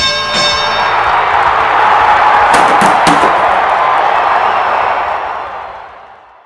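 Boxing ring bell sound effect ringing once and dying away within about a second, over a crowd cheering sound effect that swells, holds, and fades out near the end.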